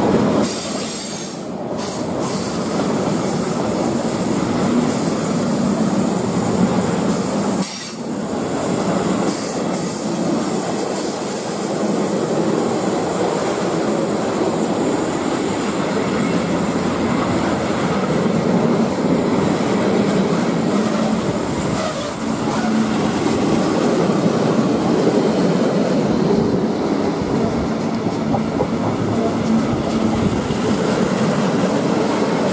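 Freight train of sliding-wall box wagons and steel-coil flat wagons rolling past close by: a loud, steady rumble of wheels on the rails.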